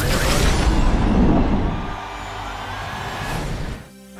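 Cinematic boom hit for a highlight-reel transition: a sudden heavy impact at the start that rumbles on for about two seconds, then a quieter sustained musical bed that drops away briefly near the end.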